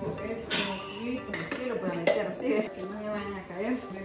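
A woman's voice talking, with cups and mugs in a plastic basin clattering sharply twice, about half a second in and again about two seconds in.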